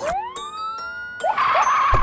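Cartoon police siren sound effect: one rising wail that climbs over about a second and then holds its pitch, over light background music. It is followed near the end by a burst of rushing noise and a low thump.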